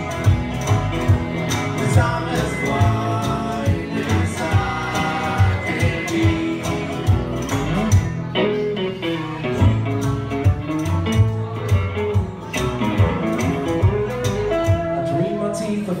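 Live bluegrass band playing an instrumental break between verses: bowed fiddle over banjo, acoustic guitar, upright bass and brushed percussion, with a steady beat.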